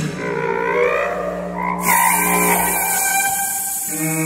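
Contemporary chamber quintet of flute, clarinet, bass trombone, viola and cello playing a held low note, with wavering, gliding higher tones over it. About two seconds in, a breathy hiss enters and carries on over the held note.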